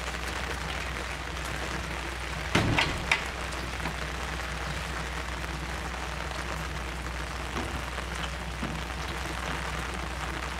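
Steady hiss of outdoor background noise over a low hum, broken about two and a half seconds in by a quick cluster of three knocks.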